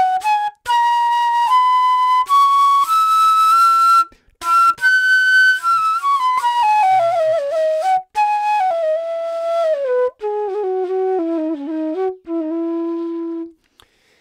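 Bamboo bansuri made by Alon Treitel, played solo and dry with no reverb or processing. A melodic phrase climbs stepwise to a high note, then comes down with pitch bends and ornaments to a low held note near the end, broken by short breaths.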